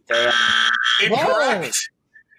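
Game-show wrong-answer buzzer: a steady harsh buzz lasting about a second that marks an incorrect answer. It is followed by several voices crying out at once.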